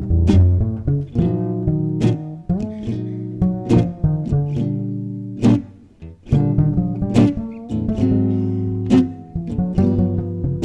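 Live jazz band: an upright double bass plucking a run of deep, sharply attacked notes, with an acoustic guitar strumming chords behind it.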